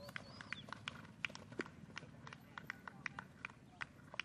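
Hoofbeats of a horse cantering on a dirt arena: a steady run of several footfalls a second.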